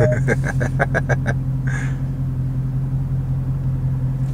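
The 6.4-litre HEMI V8 of a 2020 Dodge Charger Scat Pack idling, heard inside the cabin as a steady low hum. A quick run of laughter comes over it in the first second and a half.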